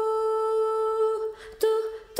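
A wordless hummed vocal melody: one long held note for about a second and a half, then a shorter note near the end.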